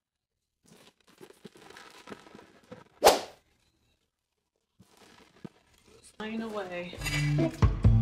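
Faint kitchen handling noises with one sharp knock about three seconds in, then background music starting about six seconds in.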